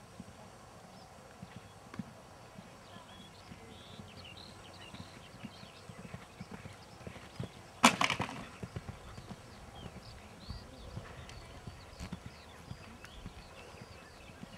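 Horse's hooves thudding softly on a sand arena at a canter. A single loud, sharp clatter comes about eight seconds in.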